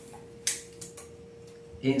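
Retractable tape measure being pulled out along a dried guama pod: a short scrape about half a second in, followed by a few faint ticks.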